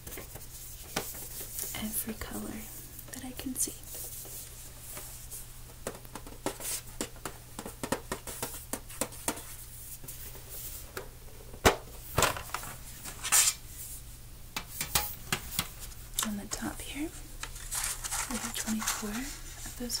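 A metal colored-pencil tin being handled and opened, with a run of small clicks and taps from the lid and the pencils shifting inside. The sharpest clicks come in a cluster about twelve seconds in.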